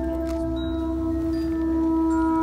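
Marching band music: a soft, sustained chord of ringing, chime-like mallet-percussion tones, held steady and swelling slightly toward the end.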